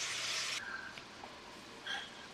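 Chicken and vegetables frying in a skillet, a faint steady sizzle that cuts off abruptly about half a second in, leaving quiet room tone.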